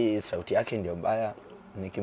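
A man's voice talking in conversation, in short bursts with brief pauses.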